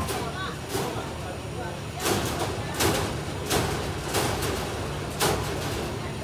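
Bus engine idling with a steady low hum, while several short, sharp clacks sound over it.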